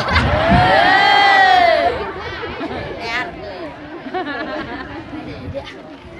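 Audience laughing and calling out together, loud for about two seconds, then settling into scattered chatter and laughter that fades away.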